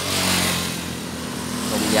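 A motorcycle passing on the road, its engine hum and tyre rush loudest about a third of a second in.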